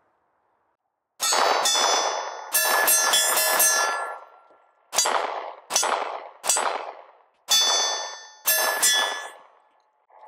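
Smith & Wesson M&P Shield Plus pistol firing a string of about seven shots at uneven intervals, the first about a second in. Each shot is followed by a long metallic ring as it dies away.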